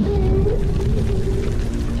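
Whale call sound effect: one long moan that bends in pitch about half a second in, over background music.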